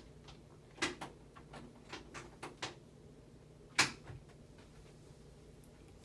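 Handling on a padded chiropractic table as hands work over a patient's back: a scatter of light clicks and taps, with one sharper click just before four seconds in, over a faint room hum.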